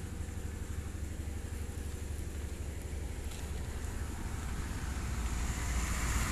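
Diesel engine of a mobile circular sawmill running steadily, a low rapid chugging.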